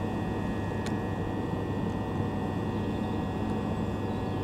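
Steady electrical hum from electric multiple-unit trains standing at the platform, with a few high, steady whining tones over a low drone and one faint click about a second in.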